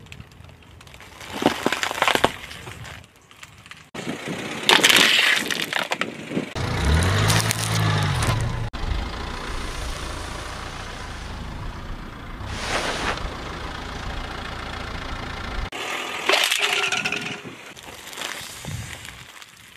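Packaged foods and their cardboard and plastic wrappers crunching and cracking under a slowly rolling car tyre, in several separate bursts a few seconds apart. A car engine runs low through the middle stretch, rising and falling once.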